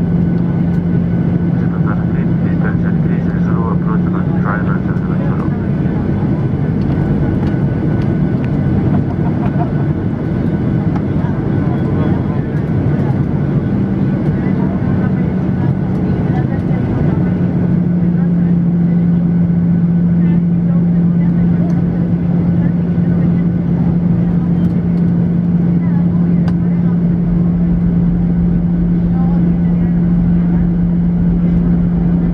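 Steady engine and airflow noise inside the cabin of a jet airliner descending on its landing approach, with a low hum that becomes stronger and steadier about seventeen seconds in.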